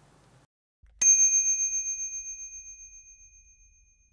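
A single bright bell ding, struck once about a second in and ringing out with a slight wavering as it fades over about three seconds.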